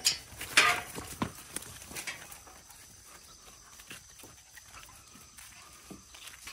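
Dogs at a metal garden gate as it is opened: a few loud short noises and a falling squeak-like tone in the first second or so, then faint scattered clicks and rustles.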